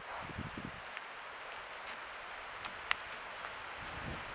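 Rustling and a few low thumps of a deer moving right beside a trail camera, over the camera microphone's steady hiss, with a sharp click about three seconds in.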